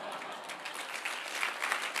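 Audience applauding, the clapping thickening and growing louder after the first half second.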